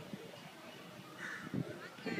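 Faint open-air ambience with distant voices and a single bird call about a second in.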